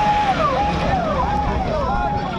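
Off-road jeep's engine running as it drives into a muddy water pit, under crowd chatter. Over it, a repeating pattern of high, falling whistle-like tones comes round about three times every two seconds.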